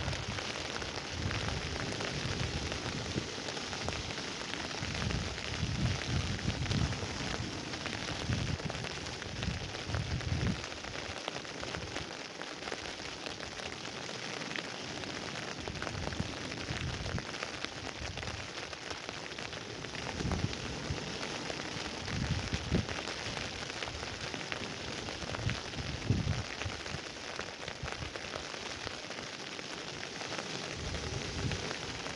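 Wind on an open beach: a steady hiss, with gusts buffeting the microphone as irregular low rumbles, strongest in the first third and again after about twenty seconds.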